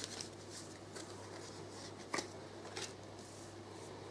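Faint handling of a deck of tarot cards: a few soft card slides and taps as a card is drawn and laid down on the table, the clearest about two seconds in. A steady low hum lies underneath.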